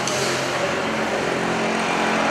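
Steady rushing noise of road traffic, with a faint low hum underneath.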